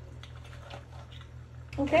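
Wooden spoon stirring cooked mussels in a pan, the shells clicking and clattering lightly against each other and the pan, over a steady low hum. A woman starts to speak near the end.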